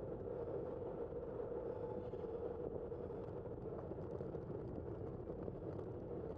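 Steady wind and road rumble picked up by a camera mounted on a moving bicycle, with a constant low hum and no distinct events.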